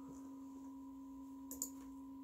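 A faint, steady background hum made of two pure tones, one low and one higher, with a brief soft click about one and a half seconds in.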